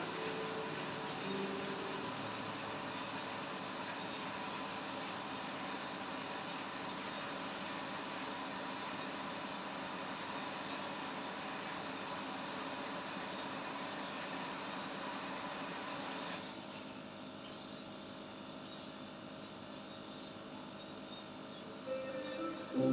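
Aquarium aeration: a steady hiss of air bubbles streaming up through the tank water, with a faint steady hum beneath. About three-quarters of the way through it drops quieter and duller.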